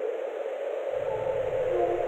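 A steady hiss-like noise wash centred in the midrange, with a faint hum and a few faint short tones. The low end is absent for about the first second, then comes back.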